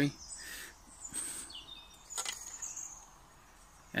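Light handling noises of a stainless steel camping cup and its plastic lid, short rustles and a sharp click about two seconds in, with faint bird chirps.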